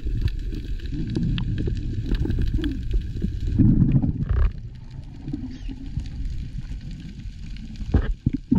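Muffled underwater rumble of water moving past a camera in its waterproof housing as a diver swims, swelling louder about halfway through and easing after. Scattered faint clicks sound over it.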